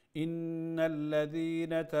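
A man chanting Quran recitation in drawn-out tajweed style, holding long steady notes. It starts a moment in, after a brief pause.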